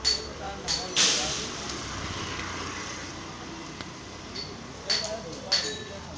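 Several sharp clicks with a bright ringing edge over a steady street background. The loudest comes about a second in and is followed by a rushing hiss that fades over the next two seconds.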